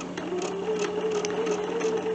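Bernina 770QE sewing machine stitching fabric strips together at a steady speed, its motor running with an even hum.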